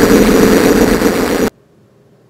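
A very loud burst of harsh noise, a sound effect laid over a red-tinted zoom edit, that cuts off suddenly about a second and a half in.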